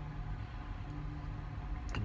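A low, steady hum over a faint rumble, with no distinct events.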